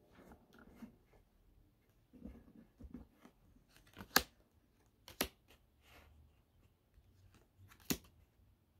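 Tarot cards being handled and laid on a table: soft rustling and sliding, with sharp card snaps about four, five and eight seconds in.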